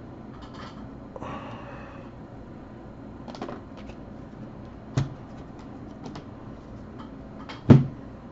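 Trading-card boxes and packs being handled on a table: a short rustle of packaging about a second in, a light click, then two sharp knocks as things are set down, the second, near the end, the loudest.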